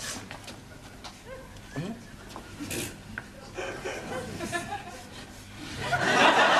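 Scattered studio-audience chuckles and faint murmuring, swelling into loud audience laughter right at the end.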